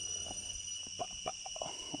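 A continuous high-pitched whistle of insects in the rainforest: several thin steady tones held without a break, with a few faint ticks about halfway through.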